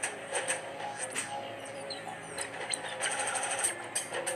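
Intro music with mechanical clicking and ticking effects, including a fast run of ticks near the end.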